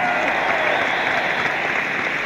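Arena audience applauding steadily.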